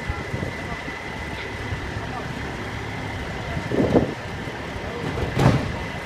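Heavy diesel wrecker trucks running steadily under a thin, steady high whine. A short louder burst comes about four seconds in, and a single sharp bang follows about a second and a half later.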